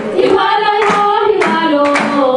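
Group of voices singing a Djiboutian folk dance song together, with hand claps about twice a second keeping the beat.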